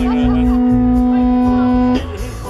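Electric guitar feeding back through the stage amplifier, a single steady sustained note held without wavering and cut off suddenly near the end, over the band's low bass beat.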